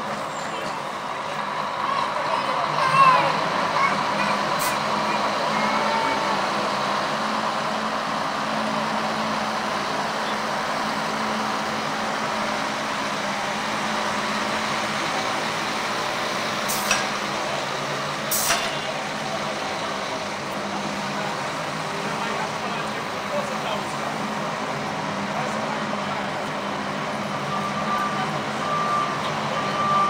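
Busy city street noise: traffic and a lorry running at roadworks, with passers-by talking. Two sharp knocks come a little after halfway, and near the end a vehicle's reversing alarm starts beeping steadily.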